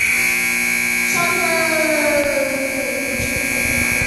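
Arena time buzzer sounding one long, loud, steady tone that starts suddenly, signalling that the period's time has run out.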